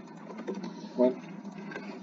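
Steady low background hiss in a pause between spoken phrases, with one short hummed 'um' from a man's voice about a second in.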